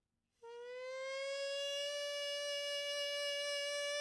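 Hichiriki, the Japanese double-reed pipe, sounding one long held note that enters about half a second in, slides up slightly in pitch and then settles steady.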